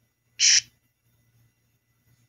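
A short, loud burst of high, hissy noise about half a second in, from a ghost box sweeping through radio frequencies, over a faint low hum.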